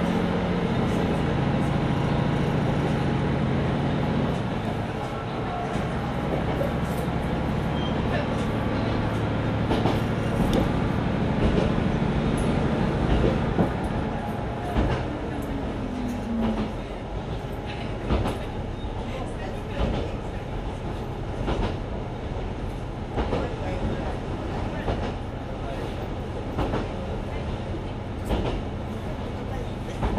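Mizushima Rinkai Railway MRT300 diesel railcar running. The engine's steady note drops away about four seconds in, a short falling whine follows about halfway through, and then rail-joint clicks come at a steady beat of about one a second.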